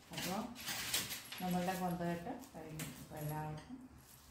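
A person speaking, in a voice that rises and falls; no other sound stands out.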